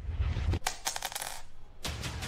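Bright metallic jingling in two short runs of rapid clicks, one about half a second in and one near the end, over a low rumble.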